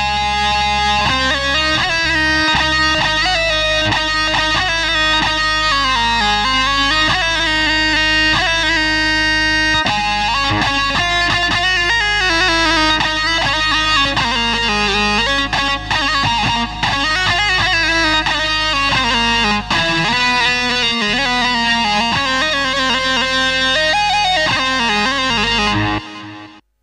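Roland Juno-G synthesizer keyboard played live on a guitar-like plucked-string tone, a running melody over a steady low bass. It starts suddenly and cuts off at the end, as one tone is demonstrated before switching to the next.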